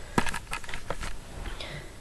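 Handling noise of a handheld camera being turned around: a quick cluster of sharp clicks and rustles in the first second, then quieter fumbling.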